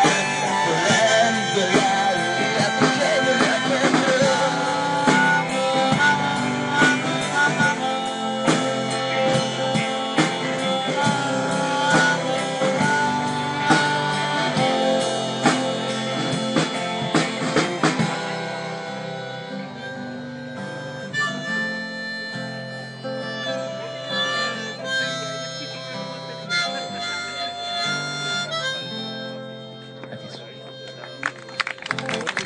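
Live band music with a harmonica lead over guitar and a full rhythm section. About eighteen seconds in the beat drops out and the music thins to held guitar and harmonica notes, growing quieter as the song winds down.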